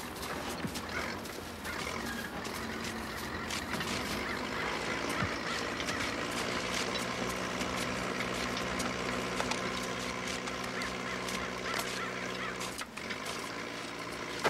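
A low, steady droning hum of several held pitches, strongest in the second half and cutting off suddenly near the end, with scattered light clicks throughout.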